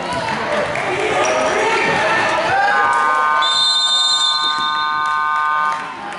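Gym scoreboard buzzer sounding one steady electronic tone for about three seconds, with a higher tone joining partway through, then cutting off suddenly. Before it come crowd voices and basketball bounces on the court.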